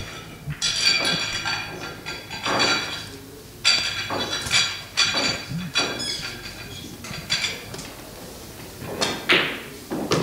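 Pool balls clacking against one another: about ten sharp clicks, each with a short ringing tail, coming at irregular intervals.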